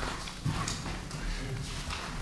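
Sheets of paper being handled and shuffled on a table, with a few light knocks, and faint murmuring in a quiet meeting room.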